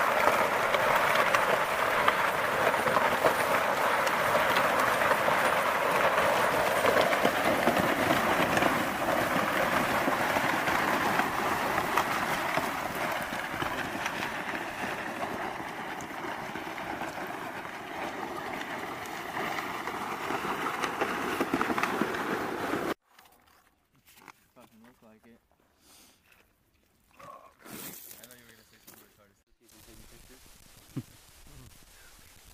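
Flexible plastic rescue litter dragged over a gravel road: a continuous rough scraping that eases a little midway, then stops abruptly about two-thirds of the way through, after which only faint scattered sounds remain.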